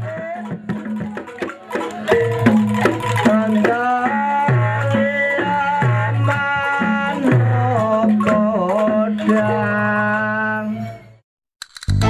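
Javanese folk music for a lengger tapeng dance: a wavering singing voice over repeated drum strokes and low sustained tones. It cuts off abruptly near the end.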